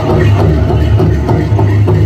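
Powwow drum music for grass dancers: a large drum beaten in a steady, loud rhythm.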